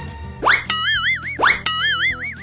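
Cartoon comedy sound effect played twice: each time a quick rising boing-like swoop, then a wobbling warble, about a second apart, over faint background music.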